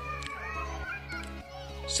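Background music with a low, steady bass pulse, under faint distant voices.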